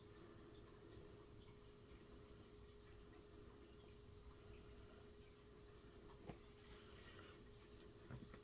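Near silence: room tone with a faint steady hum, and a single faint click about six seconds in.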